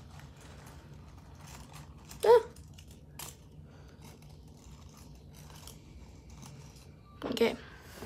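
Faint rustling and small clicks of artificial flower vines being handled, over a steady low hum. A short vocal sound breaks in about two seconds in, and another near the end.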